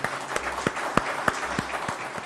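Applause from a room of people, with single louder claps standing out about three times a second.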